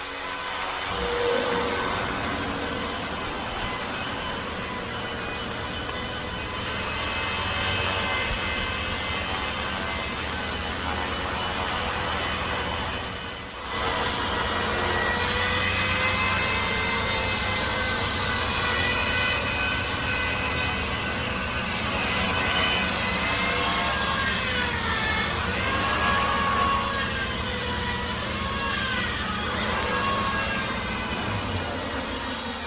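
Blade 200 SRX electric RC helicopter in flight: the whine of its motor and the hum of its spinning rotor blades, the pitch rising and falling, most sharply in the last few seconds. The sound briefly drops in level about halfway through.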